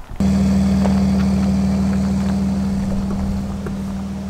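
Mercedes Sprinter van's engine running with a steady low drone that slowly fades as the van pulls away.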